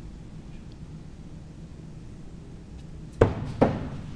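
Two throwing axes striking wooden target boards one after the other, two sharp impacts less than half a second apart near the end.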